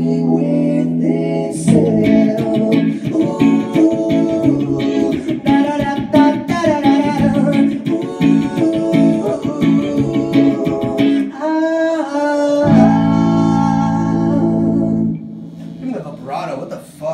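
Electric guitar played through an amplifier with sung vocals, run through a newly bought effects pedal. Near the end a long chord is held for about two seconds, then stops shortly before the end.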